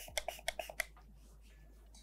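Trigger spray bottle of tattoo stencil remover pumped rapidly, a quick train of short spritzes about seven a second, each a trigger click with a brief hiss of spray, stopping just under a second in.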